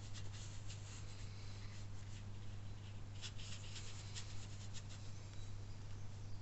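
Watercolour brush stroking and dabbing on paper: short, irregular scratchy strokes, a cluster of them about three seconds in. A steady low hum runs underneath.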